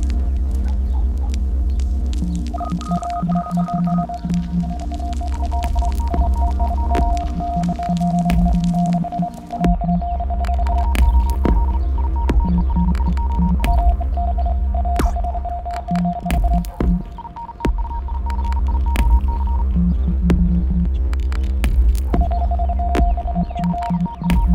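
Electronic soundtrack: a deep, throbbing low hum with held high electronic tones that switch on and off, and scattered clicks.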